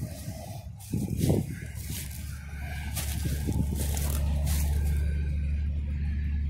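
Interstate highway traffic passing steadily, growing louder in the second half as a vehicle approaches. Occasional short rustles and steps come through the low ground cover.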